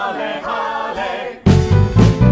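Mixed choir singing in harmony, almost unaccompanied at first; about one and a half seconds in, the band comes back in loudly with drums and bass under the voices.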